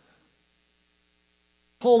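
Near silence, then a man's voice starts near the end.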